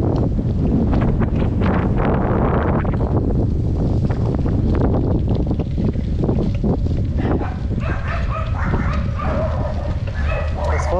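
Wind buffeting the microphone of a camera moving along at cycling speed, a steady low rumble with crackles, over a rough, rutted dirt road. A dog barks a few times near the end.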